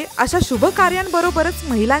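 A voice-over speaking without pause over background music.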